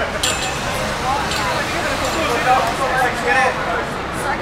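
Background chatter of several people talking at once, with a short, sharp clink about a quarter second in.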